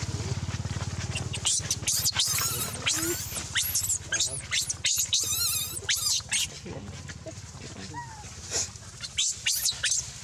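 Baby macaque screaming in distress: a run of very high-pitched, arching shrieks in quick succession, then a short second run near the end. A low steady hum fades out in the first second or two.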